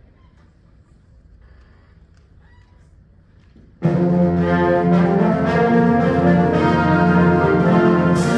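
High school concert band starting its first piece about halfway in: the full band comes in together, loud, on held brass-led chords. Before that the hall is quiet.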